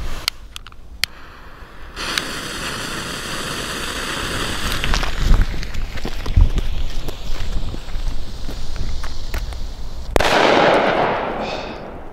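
A Funke Böller D firecracker (18 g net explosive mass) with its fuse lit. The fuse hisses and sputters for about eight seconds, then the cracker goes off about ten seconds in with one sharp bang that echoes and dies away over a second or so.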